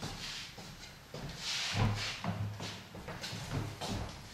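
Footsteps and shoe scuffs of two people walking back and forth on a wooden floor: a string of irregular soft thuds, with a brief scraping hiss of a shoe sliding about a second and a half in.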